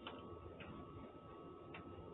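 Faint, unevenly spaced ticks, three in about two seconds, over a steady thin high tone and a low background hum.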